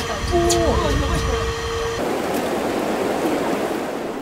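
A steady hum with a few faint voices, then, after a sudden change about halfway, water running and churning through shallow sea-grape cultivation tanks fed with deep-sea water.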